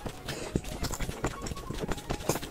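Close-miked mouth sounds of chewing: irregular wet clicks and smacks, several a second.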